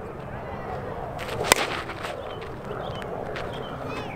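One sharp crack about a second and a half in: a two-piece composite slowpitch softball bat striking a 52/300 softball. The ball is jammed, struck in toward the hands rather than squared up.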